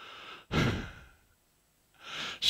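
A man's breathy exhale, a sigh close into a headset microphone, about half a second in and fading within half a second.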